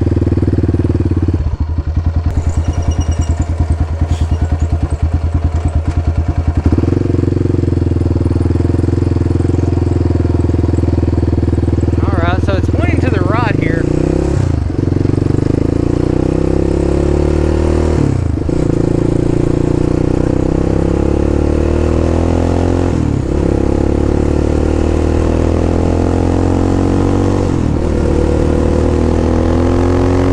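Yamaha Raptor 700 ATV's single-cylinder four-stroke engine pulling at low revs with a pulsing beat for the first few seconds. It then accelerates up through the gears, the pitch climbing in each gear and dropping sharply at four upshifts.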